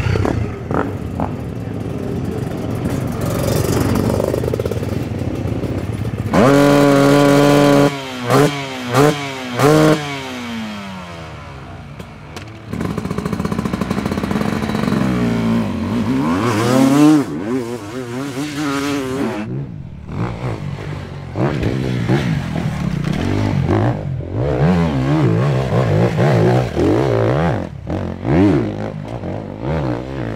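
Enduro dirt bike engines revving and accelerating across several shots: a held high rev about a third of the way in, followed by a few quick throttle blips, then rising and falling revs through the second half.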